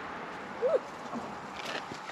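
Water running steadily from a garden hose into a camper van's fresh-water tank filler, an even hiss. A brief rising-and-falling pitched call sounds about a third of the way in.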